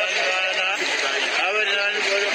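A singing voice with a wavering, quavering pitch, running through without pause.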